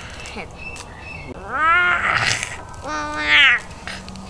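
A young boy imitating a lion's roar with his voice: two drawn-out roars of about a second each, the first rising and then falling in pitch, the second rising.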